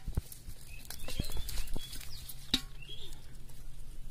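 Dry leaves and a nylon cast net rustling and crackling as fish are picked out of the mesh by hand, with scattered sharp taps and clicks. The loudest click comes about two and a half seconds in.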